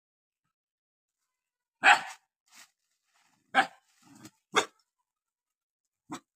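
Dog barking: three short, loud barks, the first about two seconds in and the others about a second apart, with a few fainter sounds between them.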